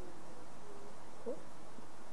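Dry-erase marker squeaking faintly on a whiteboard in short hatching strokes, with a brief rising squeak a little past a second in.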